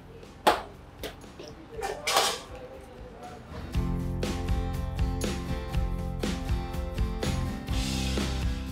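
A metal spoon clicking and scraping against a large stainless-steel mixing bowl as cream and fruit are stirred, with one sharp click near the start. Background music with steady held chords comes in a little before halfway and carries on.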